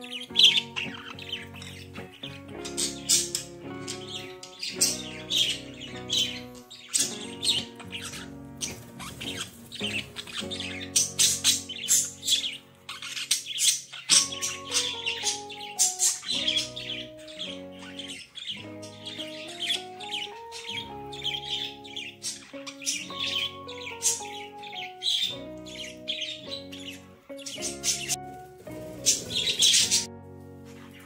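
Budgerigars chirping and squawking, with many quick, sharp calls, over gentle melodic background music.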